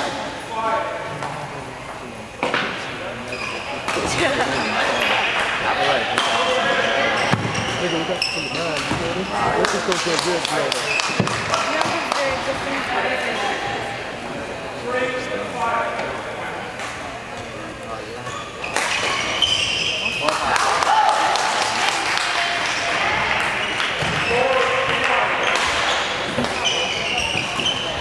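Badminton rally: rackets striking the shuttlecock in a series of sharp, irregular cracks, over voices in the background.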